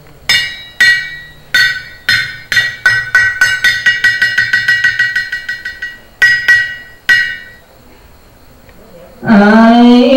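Small hand-held brass gong struck with a wooden beater in a ritual pattern: a few spaced strokes that ring on, then a quickening roll of rapid strokes, then three last strokes. A loud held musical tone starts just before the end.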